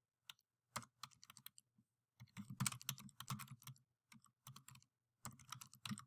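Faint typing on a computer keyboard: scattered single keystrokes at first, a quick run of keys about two seconds in, and another short flurry near the end.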